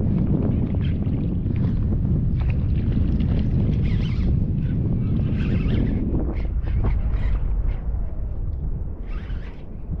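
Wind buffeting the microphone in a steady low rumble as a kayak drifts on open water, with short, brighter hisses now and then over it.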